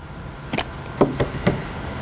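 Computer keyboard keys being typed, about five separate sharp clacks at uneven intervals.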